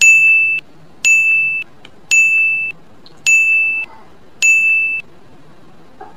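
Countdown-timer sound effect: five identical high electronic beeps, one a second, each lasting about half a second, counting down five seconds.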